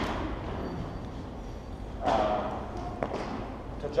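A thump that rings out in a large, echoing gym hall, followed about two seconds later by a brief voice sound and a single light tap.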